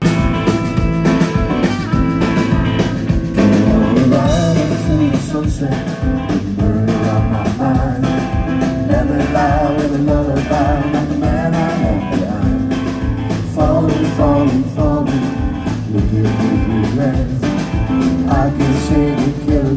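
A live band playing a blues-rock song with guitar, upright bass and a steady beat, with singing over it. The music starts abruptly.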